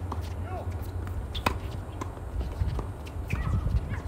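Tennis balls struck by rackets during a doubles rally on a hard court, sharp pops a second or less apart with the loudest about a second and a half in, along with players' running footsteps and short shoe squeaks on the court surface over a low steady rumble.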